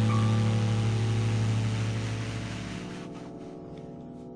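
Final held chord of a saxophone ballad: the tenor saxophone sustains a low closing note that stops about three seconds in, while the accompaniment's chord rings on and fades out.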